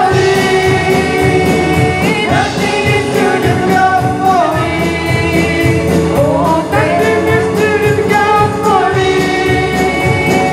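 Live worship song: a group of men and women singing together in harmony, backed by electric guitars and a band keeping a steady beat.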